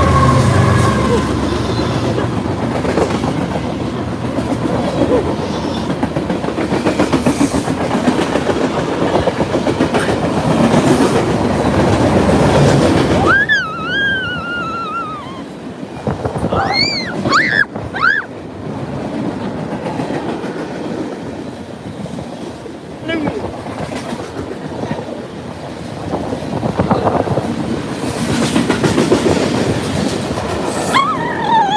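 BNSF diesel freight train passing at speed close by, with the last of its horn dying away in the first second. The locomotive's heavy rumble fills roughly the first 13 seconds, then the freight cars roll past with a lighter, steady clatter of wheels over the rail joints. A few high wavering squeals come around the middle.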